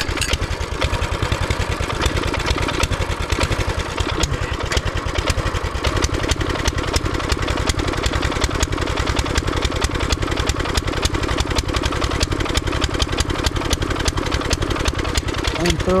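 Mini bike's small single-cylinder engine running steadily at idle, with an even, rapid firing beat.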